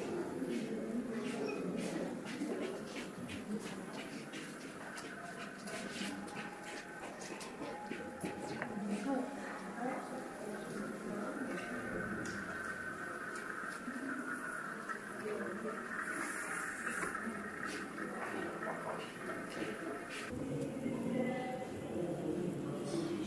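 Indistinct voices of many people talking at once, with scattered sharp clicks through the first half.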